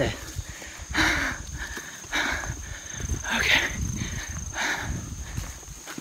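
Running footsteps and rough panting breaths about once a second, with rumble from the handheld microphone jostling. Under it, from about a second in, a steady high insect drone.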